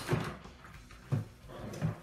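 Plastic clunks as the shop vac's motor-head cover is handled and lifted off: a knock at the start, a louder one about a second in, and a lighter one near the end.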